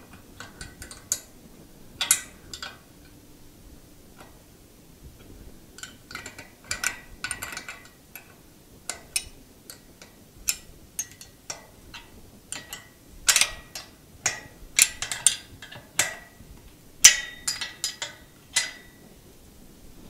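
Irregular metallic clicks and clinks, some ringing briefly, as the chain and steel fittings of a homemade bandsaw mill's lift mechanism are tightened by hand with tools. They are sparse at first and come in quicker clusters in the second half.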